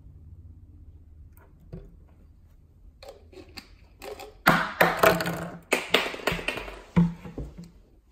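Handling noise on a tabletop: a dense run of knocks, clicks and rustles, loudest through the second half, after a quiet start with one small click.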